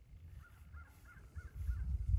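A bird calling faintly: a quick run of about six short calls that each rise and fall in pitch, over a low rumble.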